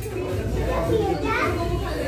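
Several voices, children's among them, talking and calling out over one another in a room, with a steady low hum underneath.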